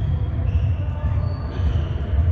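Ambience of an indoor soccer game in a large, echoing sports hall: distant players' shouts and thuds of the ball over a steady low rumble.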